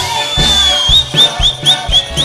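Russian folk dance tune played by a Cossack ensemble on accordion, guitar and balalaikas over a regular bass beat. A high whistle sounds over the band: one long held note, then a quick run of short rising whistles, about four a second, in the second half.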